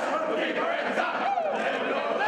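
A crowd of many voices shouting at once, a steady din with no single voice standing out.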